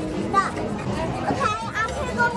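Indistinct background voices in a restaurant dining room, including children's voices, with no clear foreground words.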